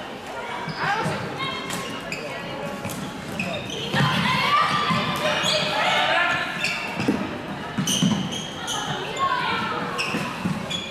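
Floorball being played in a large echoing sports hall: sharp clicks of plastic sticks and ball, shoes squeaking on the court floor, and players calling out, loudest in the middle of the stretch.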